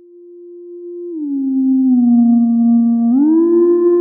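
Minimoog Model D app playing its 'Theremin' factory preset: a single smooth, sine-like synth tone that swells in slowly. It glides down in pitch about a second in and slides back up a little after three seconds.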